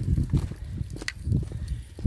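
Footsteps of someone walking on a lane, heard as irregular low thuds with a few sharp clicks close to the phone microphone.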